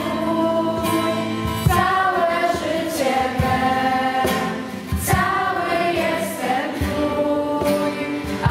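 A group of girls singing a church hymn together into microphones, holding long notes, with an acoustic guitar strumming along.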